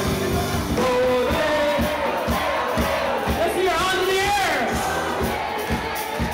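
Live folk-rock band playing with a steady drumbeat, voices singing and shouting over it, and an audience joining in.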